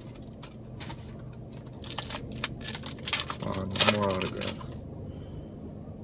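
Baseball trading cards being flicked through by hand: a run of quick, crisp clicks as the cards slide and snap against each other, densest around two to three seconds in.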